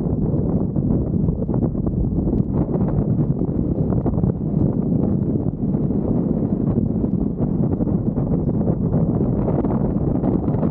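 Airflow in flight buffeting the microphone of a paraglider pilot's camera: a steady low wind rumble that keeps rising and falling slightly, with no tones or distinct knocks.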